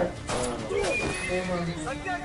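A horse whinnying in a film soundtrack, with pitched calls that glide up and down.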